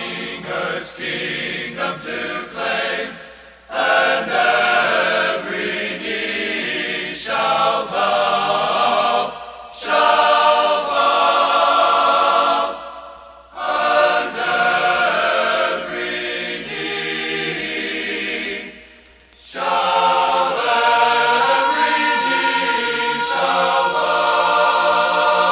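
Men's choir singing a sacred song in phrases, with four short pauses for breath between them.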